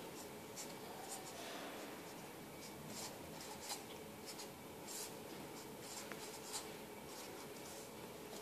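Black marker writing on a sheet of paper: short, faint, scratchy strokes at irregular intervals over a low steady hiss.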